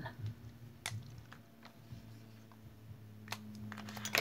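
Small objects handled on a tabletop: a few faint clicks and taps, the sharpest about a second in and another near the end, over a low steady hum.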